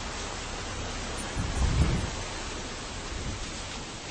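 Steady hiss of wind and rustling on a handheld camera's microphone as it moves through leafy branches, with a low rumble about a second and a half in.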